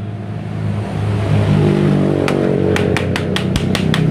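A vehicle engine running steadily, its pitch rising a little about a second in. From about two seconds in, a quick series of sharp taps: a scooter's air-filter element being knocked against the floor to shake the dust out.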